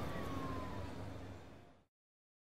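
Fading outro sound effect: a low rumble with a faint thin tone gliding down in pitch, dying away shortly before two seconds in.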